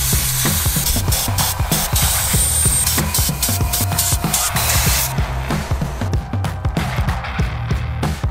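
Background music with a steady beat, over the loud hiss of a sandblaster gun blasting bronze parts inside a blast cabinet. The hiss stops about five seconds in.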